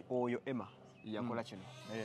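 A man's voice saying a few short, drawn-out words ("Emma") with pauses between them.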